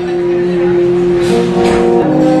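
Brass quintet of two trumpets, French horn, trombone and tuba holding a sustained chord, with a brief rushing noise a little past halfway through.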